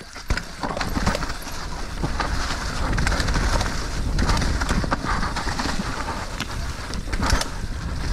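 Mountain bike rolling down a dirt trail covered in leaf litter: a steady noise of tyres over leaves and soil, with wind rumbling on the camera microphone. A couple of sharp knocks come as the bike goes over roots or rocks, once just after the start and once near the end.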